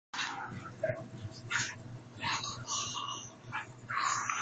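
Pug puppy yapping at a toy in several short, separate barks.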